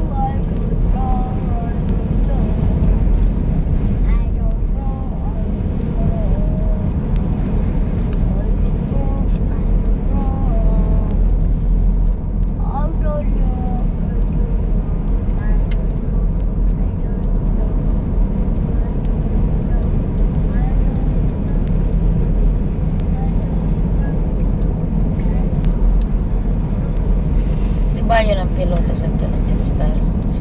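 Steady low road and engine noise heard inside a moving car's cabin, with faint voices now and then.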